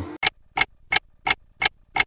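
Clock ticking, about three sharp ticks a second, as a time-passing sound effect.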